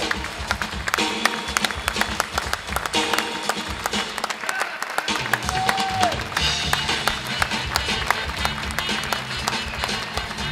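Audience applauding with many rapid hand claps over music playing, with a few scattered vocal whoops.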